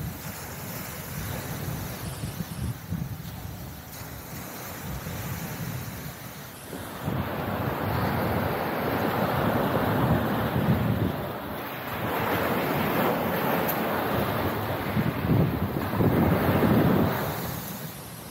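Sea surf breaking and washing up a pebble beach, with wind on the microphone. The surf grows louder about seven seconds in and comes in repeated surges.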